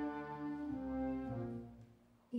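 Wind band playing soft, slow, sustained chords over a low bass line, the chords shifting a few times and fading away near the end.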